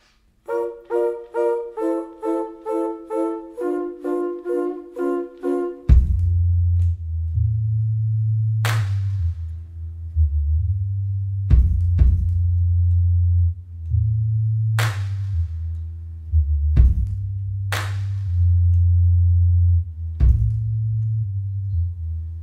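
A live jazz band opening a tune: a repeated figure of short mid-range keyboard notes, about two and a half a second, then about six seconds in deep held bass notes take over, with sharp crashes every few seconds.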